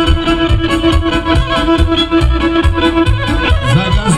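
Instrumental Serbian kolo dance music led by an accordion, over a steady, fast beat, with one long held note through most of the passage until near the end.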